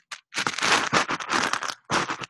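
Loud crinkling and crackling close to a video-call microphone for about a second and a half, breaking into a run of short separate crackles near the end.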